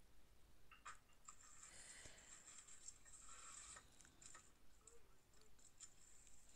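Near silence, with faint scratchy handling noise and a few soft clicks while a ball of cold porcelain clay is worked with a thin modelling tool.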